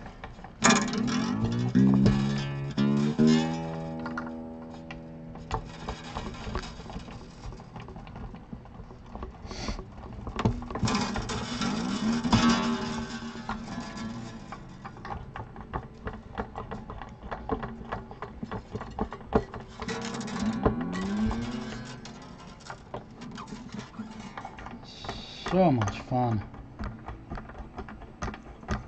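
Acoustic guitar strings plucked and left ringing while they are brought back up to tension after a new saddle is fitted: a ringing spread of notes near the start, then single notes whose pitch slides as the tuners are turned. Small clicks and rattles of the strings being handled at the bridge run throughout.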